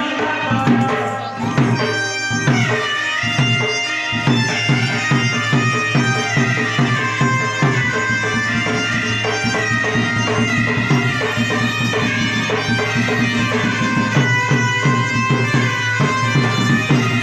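Live Odia folk dance music: a reedy double-reed pipe plays a sustained melody over steady drum beats, with a long held high note starting a couple of seconds in.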